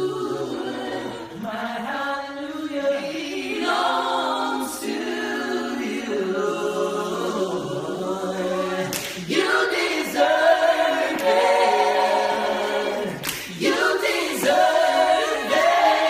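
Five-voice a cappella gospel group, men and women singing together in harmony with no instruments, growing louder about nine seconds in.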